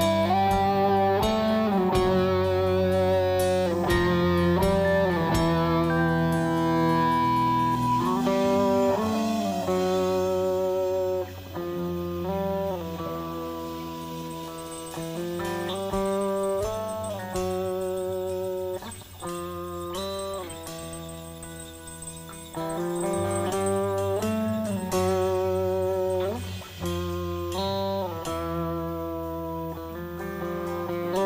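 Rock band playing live with no singing: electric guitars carry lead lines with bent and sliding notes over bass and drums. About eleven seconds in the band drops to a quieter, sparser passage, then builds back up a little after twenty seconds.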